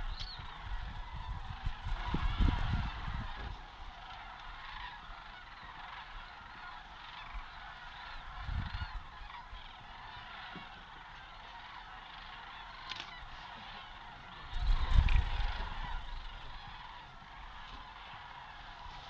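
A large flock of sandhill cranes calling, their many overlapping rolling calls blending into a steady chorus. Low rumbling noise on the microphone swells three times, about two seconds in, near the middle and near the end, and is the loudest sound at those moments.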